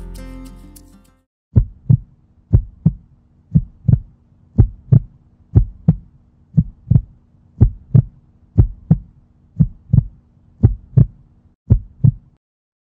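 Heartbeat sound effect, a double thump about once a second, repeated about eleven times over a faint low drone, marking a suspense countdown. A short music sting fades out in the first second.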